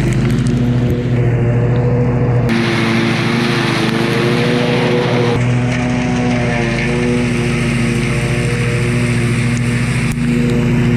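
Zero-turn mower engine running steadily under load with the cutting blades engaged, the lowered deck mulching a pile of wood chips.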